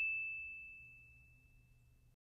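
The dying tail of a single ding sound effect: one high, pure chime tone fading away over the first second, leaving near silence.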